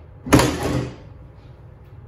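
A single heavy clunk from a C3 Corvette's hood and latch about a third of a second in, dying away within about half a second.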